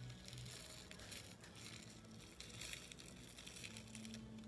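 Faint, scattered crinkling of a small clear plastic bag as pink sprinkles are shaken out of it onto slime.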